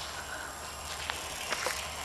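Outdoor ambience while walking: a steady low rumble of wind on the camera's microphone, with a few faint footsteps about a second in and again a little later.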